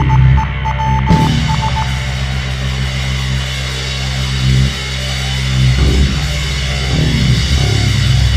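A live rock band playing loud, with electric guitar holding low, sustained chords that shift a few times.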